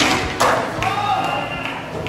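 Skateboard knocking onto a metal flat bar and grinding along it, with two sharp knocks in the first half second, a voice calling out in the middle, and background music.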